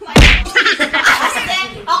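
One loud smack just after the start, with a heavy low thud, followed by excited voices.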